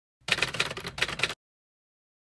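Typewriter sound effect for a text reveal: a rapid run of key clacks lasting about a second, which cuts off suddenly into dead silence.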